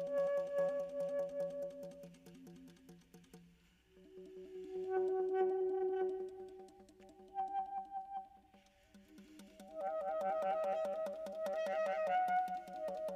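Alto saxophone playing sustained notes layered over a fast, even pulsing figure, several pitches sounding at once; the music swells and fades in three waves, about four seconds apart.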